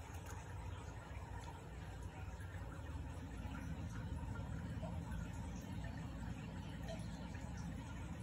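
Faint, steady background noise with indistinct distant chatter; no distinct sound event.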